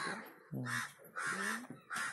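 A crow cawing, two short harsh calls in quick succession.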